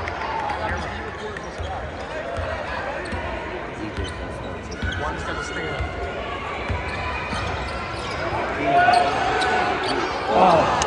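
Basketball dribbled on a hardwood court in a large arena: repeated low thumps under a steady murmur of crowd voices, with one voice calling out louder near the end.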